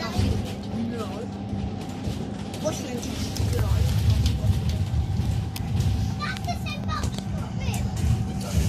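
Alexander Dennis Enviro400 double-decker bus on the move, heard from the upper deck: a steady low engine and drivetrain rumble with a constant hum, growing louder about halfway through. Indistinct passenger chatter runs underneath.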